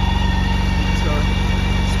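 BMW K1600 GT's inline-six engine idling steadily, a low even hum.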